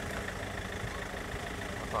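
Steady, irregular low rumble of wind buffeting the microphone.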